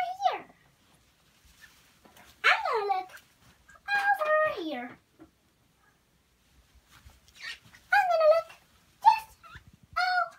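A young girl's high, wordless voice sounds in several short bursts with quiet gaps between, some gliding down in pitch.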